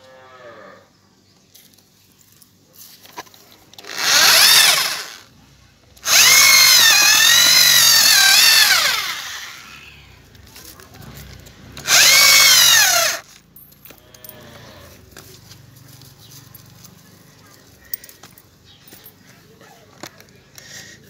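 Handheld electric drill driving a homemade twisted-bar auger into soil, run in three bursts: a short one about four seconds in, a longer one from about six seconds whose pitch wavers as it digs and then winds down, and another short one around twelve seconds.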